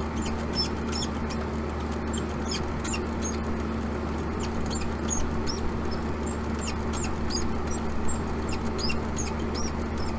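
Outdoor AC condensing unit running with a steady low hum, with many short, irregular high-pitched chirps and ticks scattered over it.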